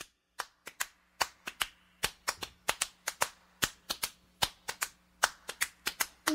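Sharp hand percussion, clicks about four a second in a repeating grouped rhythm, keeping time as the beat for an a cappella song.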